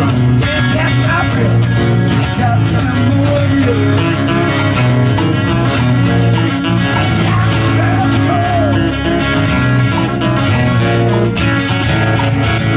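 Several acoustic guitars strumming and picking a song together, played live by a small band.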